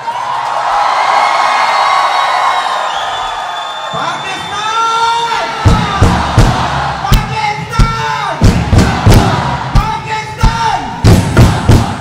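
A large crowd cheering and shouting. From about halfway through, loud drum hits from a drum circle come in under repeated massed shouts.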